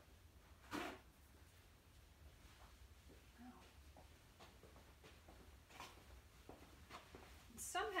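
Near silence: room tone with a faint low hum, broken by one brief knock about a second in and a few faint taps after it.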